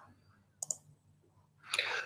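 A short double click, press and release, over faint open-microphone room noise a little over half a second in, then a soft rising noise near the end as speech begins.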